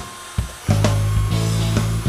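Cordless drill driving a screw into pallet wood. The motor runs steadily for about a second, starting just under a second in, with guitar music in the background.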